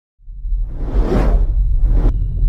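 Whoosh sound effect over a deep rumble, swelling to a peak about a second in and then fading: the sound of a news channel's animated logo intro.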